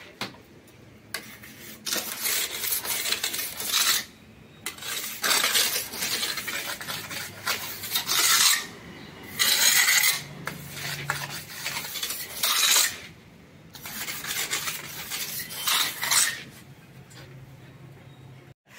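Steel plastering trowel scraping and spreading cement mortar on the edge of a concrete sunshade, in repeated strokes each one to three seconds long with short pauses between.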